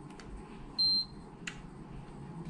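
DPM 816 coating thickness gauge giving one short, high beep as it takes a reading on a calibration substrate, followed by a light click.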